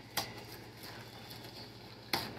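A person chewing a bite of soft brownie snack, with a sharp click just after the start and faint small mouth clicks after it.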